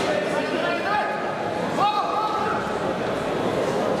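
Indistinct shouted voices and chatter echoing in a large sports hall, with a couple of short calls about one and two seconds in.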